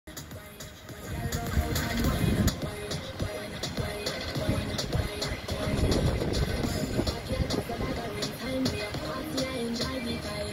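Background music with a steady beat and a simple melody.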